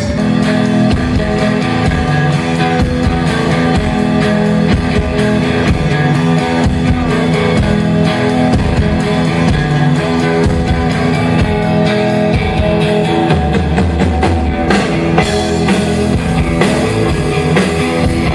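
Rock band playing live: electric guitars, bass guitar and drum kit. The song kicks in right at the start, straight after the announcement.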